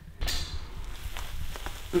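Soft scuffing and rustling handling noise of a raccoon hide being pulled down off the fatty carcass by gloved hands, with a few faint clicks, starting just after a brief pause.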